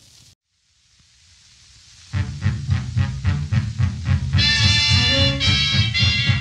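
Changeover between two 1930s–40s swing dance-band recordings: the previous track fades to a brief silence and faint hiss, then a new swing number starts about two seconds in with a steady beat of about four strokes a second. Brighter melody instruments join in about four seconds in.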